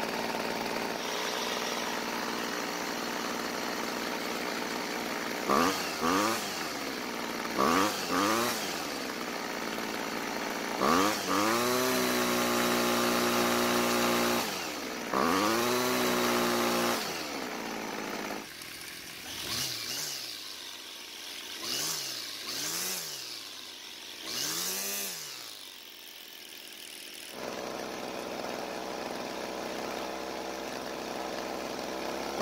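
Homelite string trimmer's small two-stroke engine idling steadily, then revved with the trigger several times, once held at high speed for about three seconds, before settling back to idle. It idles and revs cleanly, now that the air leak from its loose cylinder bolts is fixed and the carburetor has a new metering diaphragm.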